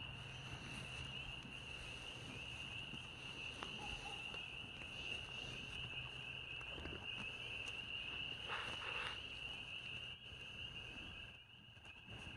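A steady, high-pitched chorus of night insects, with a few faint rustling noises.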